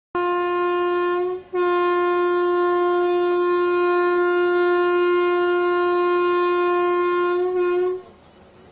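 Coromandel Express locomotive horn sounding as the train departs: a short blast, then a long single-note blast held for about six seconds.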